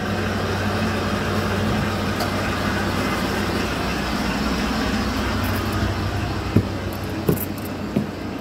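Ford F-150's engine idling steadily, running after a fresh automatic transmission fluid and filter change. Two brief knocks sound near the end.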